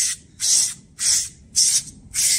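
SleekEZ deshedding tool's serrated blade scraping down a horse's coat, four quick rasping strokes at about two a second, pulling out mud and loose hair.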